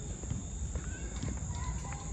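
Footsteps walking on pavement, a run of irregular soft clicks over a steady low rumble from the moving phone.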